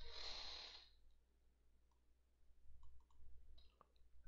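Near silence over a low steady hum: a soft breath in the first second, then a few faint clicks in the second half.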